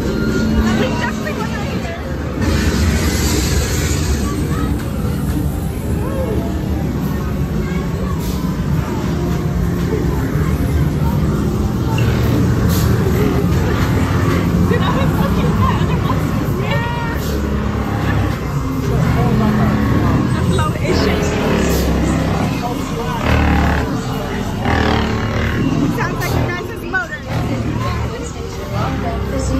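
Loud haunted-maze soundtrack: rumbling music and effects with voices over it, and a brief hissing blast about three seconds in.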